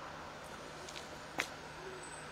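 Low, steady outdoor street background noise with one sharp click about one and a half seconds in.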